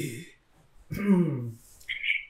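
A person's short wordless vocal sound about a second in, its pitch falling, with a throat-clearing quality.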